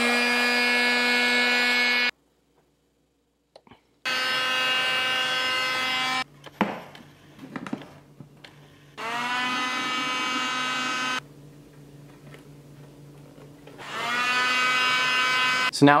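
Heat gun running in several bursts: a steady motor-and-fan whine that rises in pitch as it spins up, broken by cuts. Between the bursts come a few clicks and snaps of a flathead screwdriver prying the plastic lens away from the headlight housing.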